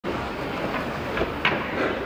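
Steady rumbling room noise of a large hall, with two short knocks a little past halfway, the second one louder.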